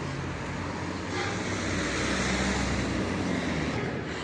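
Road traffic noise on a city street: a motor vehicle's engine and tyres passing close, swelling from about a second in and holding steady.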